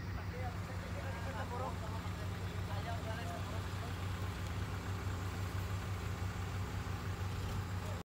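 Heavy-vehicle diesel engine idling with a steady low hum, while voices talk faintly in the first half.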